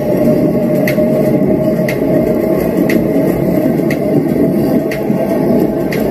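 The audio of a bicycle-ride video played through a BT-298A Bluetooth mini amplifier and a bookshelf speaker, the bass turned up high: a loud, steady rumble of ride and wind noise with a faint tick about once a second. The bass is boosted to the point of being too loud.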